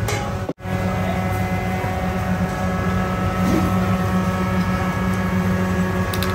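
Steady low mechanical drone with a constant hum, broken once by a brief dropout about half a second in.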